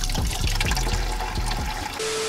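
Green engine coolant draining from the car's radiator in a steady stream and splashing into a plastic bucket.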